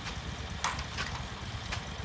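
Small engine idling steadily with a low rumble, most likely the tracked power wheelbarrow's engine, with a few faint clicks over it.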